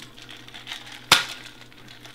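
Boston shaker being knocked to break its seal: one sharp knock about a second in, with faint clinks of glass and ice around it. The tin and glass are stuck because they were pressed together too tightly.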